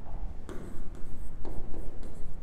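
Stylus writing on the glass face of an interactive touchscreen board: light scratches and taps of the nib as a word is written, starting about half a second in.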